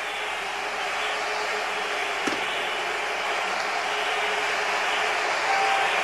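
Large outdoor crowd cheering and shouting as one dense, steady din that grows gradually louder through the final seconds of the midnight countdown.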